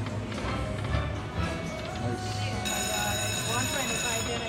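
Video slot machine's electronic reel-spin music and chimes, with a bright ringing chime tone coming in about two-thirds of the way through, over casino background voices.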